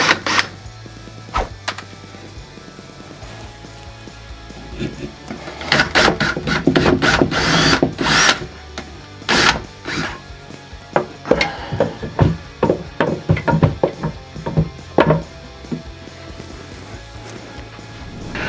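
Cordless drill with a small bit drilling pilot holes through a timber batten in short bursts, loudest between about 6 and 10 seconds in, followed by a string of short knocks and clicks. Background music runs underneath.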